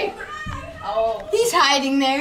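Children's voices, high-pitched and excited, growing louder and more sustained about halfway through.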